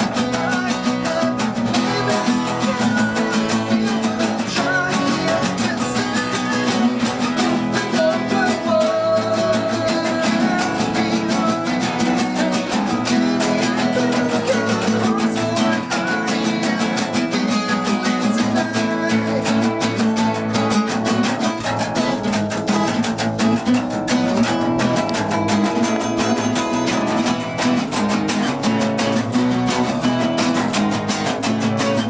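Three acoustic guitars, one of them a nylon-string classical guitar, playing an instrumental passage together with steady strumming.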